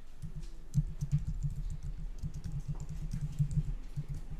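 Typing on a computer keyboard: a quick, uneven run of key clicks and key thuds.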